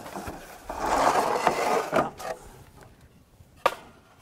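Wooden lid and boards of a cedar compost bin being lifted and moved: wood scraping against wood for about a second and a half, then a couple of short knocks.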